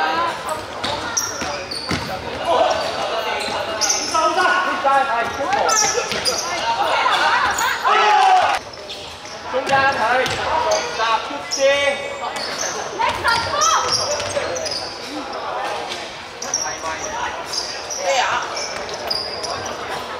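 Basketball game in a large gym: a basketball bouncing on the wooden court amid the voices of players and spectators, echoing through the hall.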